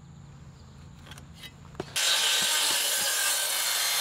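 A Big Foot beam saw, a large circular saw, starts about two seconds in and cuts steadily through a pressure-treated 6x6 post, loud and even. Before it, only faint handling clicks.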